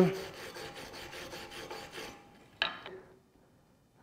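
Steel wire brush scrubbing slag off a self-shielded flux-core fillet weld on steel plate, in rapid back-and-forth strokes for about two seconds, then stopping. A single short knock follows a little later.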